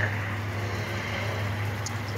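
A steady low hum under faint background noise, with no speech.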